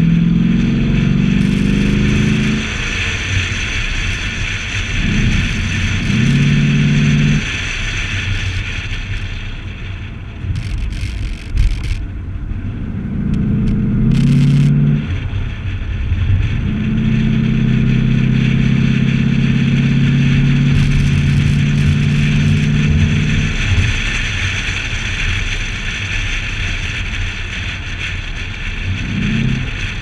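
A C6 Corvette's V8 pulling in several stretches of throttle, heard from the hood with a steady pitch in the longest pull, under constant wind noise on the hood-mounted camera's microphone.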